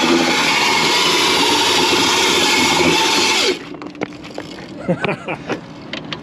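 Crazy Cart's 500-watt electric motor spinning the front drive wheel against asphalt while the cart is held in place: a loud, steady grinding hiss with a faint whine that cuts off suddenly about three and a half seconds in. A few knocks and clatters from the cart follow.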